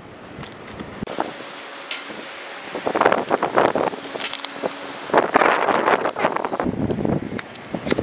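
Wind buffeting the camera microphone in gusts, with rustling from footsteps through dry grass.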